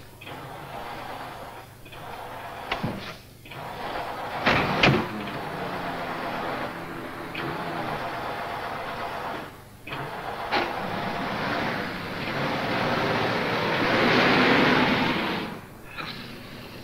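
Car starter cranking the engine in three long tries separated by short pauses, without the engine catching, with a few knocks between the first tries. The last try is the loudest. The carburettor is flooded.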